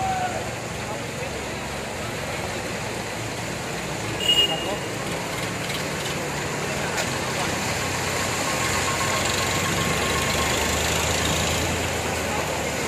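Tractor engine and motorcycles driving through floodwater, with the wash and splash of churned water, growing louder in the second half as the vehicles come close. A short high-pitched sound stands out about four seconds in.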